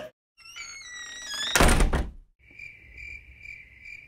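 Several rising whistle-like sweeps, then a loud thud about one and a half seconds in. After it, crickets chirp in a steady high pulse, about two chirps a second.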